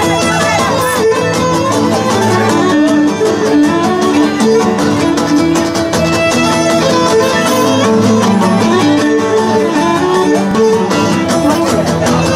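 Live Cretan folk dance music: a bowed lyra carrying the melody over strummed laouta, playing steadily throughout.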